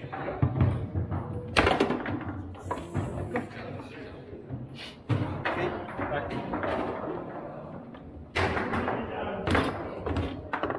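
Foosball game in play: the hard ball and the rod-mounted figures knock and slam against the table in sharp, irregular impacts, several of them loud, over voices in the room.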